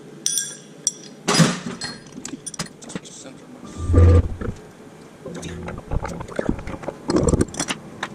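Irregular clinks, knocks and clatter of tools and small objects being handled and set down on a CNC router's spoil board, with a heavy low thump about halfway through and a louder run of knocks near the end.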